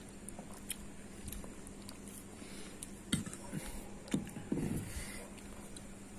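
A person drinking a peg of whisky neat: a few gulps and a breath out between about three and five seconds in, with some faint clicks before them.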